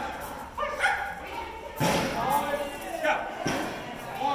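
Voices in a large echoing hall, broken by two sharp, loud thuds, the first and loudest about two seconds in and the second about a second and a half later.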